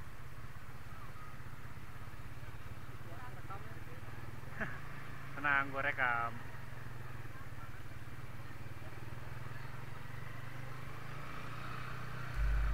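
Low, steady engine hum from a slow-moving road vehicle, with a single spoken word about halfway through.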